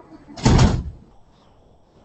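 A single loud thump with a short rush of noise, about half a second long, starting about a third of a second in.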